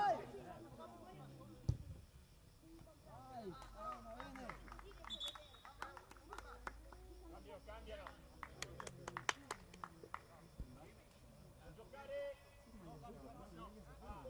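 Faint, distant shouting of players' voices across a football pitch, with a single thud a little under two seconds in and another near the end, and a run of sharp clicks in the middle.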